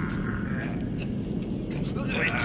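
A steady low roar of burning flames from a gas fire.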